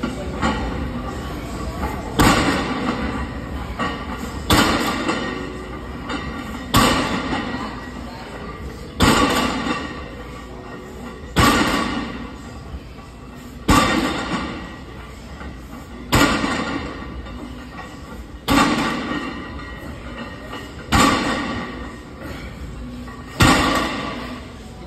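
A plate-loaded barbell touching down on a rubber gym floor at the bottom of each deadlift rep, eleven heavy thumps evenly spaced a little over two seconds apart, each followed by a short ring from the plates and bar.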